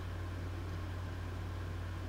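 A steady low hum with a faint even hiss and no other sound: the constant background noise of the recording, which also runs under the narration.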